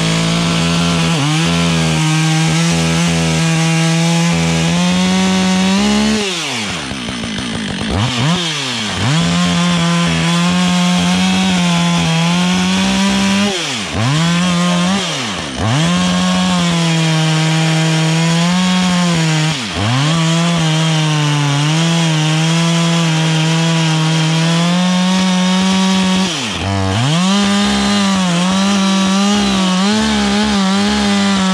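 Two-stroke Husqvarna chainsaw cutting through a stack of sawmill slab wood, running at full throttle under load. Several times it drops briefly toward idle and revs back up between cuts.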